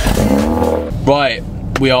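Mercedes-AMG A35 engine, heard at the exhaust tailpipe, firing up with a short rising flare of revs lasting under a second.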